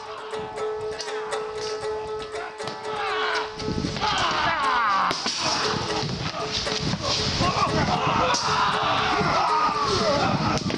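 Background music with a steady held note. From about four seconds in, many reenactors' voices shout and yell at once over it.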